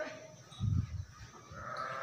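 A buffalo calling: a drawn-out, steady-pitched call that starts about one and a half seconds in, after a low thump about halfway through.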